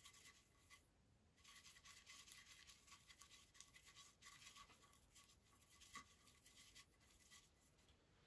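Faint scratchy strokes of a paintbrush working acrylic paint onto canvas, starting a little over a second in.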